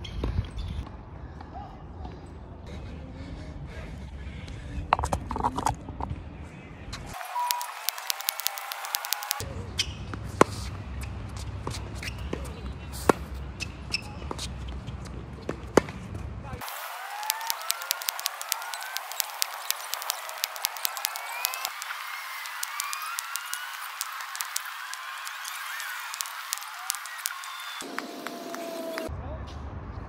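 Tennis balls struck by rackets and bouncing on a hard court during practice, heard as a series of sharp pops, in places about two a second. Birds chirp through the second half.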